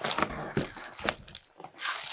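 Rustling and crinkling of packaging and a canvas tote bag as a boxed pack of disposable pastry bags is pulled out, with scattered small scrapes and knocks.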